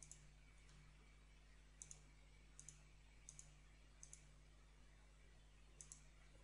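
Five faint computer-mouse clicks over near silence, each a quick double tick of the button being pressed and released, the last one near the end.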